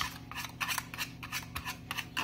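Whisk beating Oreo cake batter in a bowl: rapid clicking and scraping of the whisk wires against the bowl, about five strokes a second.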